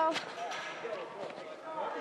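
Voices of people talking in the background, with a single sharp knock just after the start.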